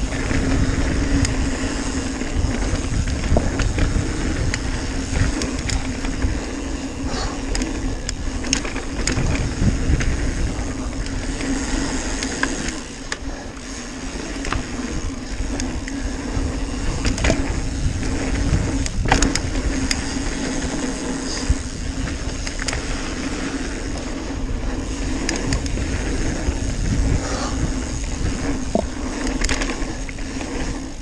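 Mountain bike rolling fast down a packed-dirt trail: steady tyre and wind noise with a heavy low rumble on the microphone, broken by scattered sharp rattles and knocks from the bike over bumps.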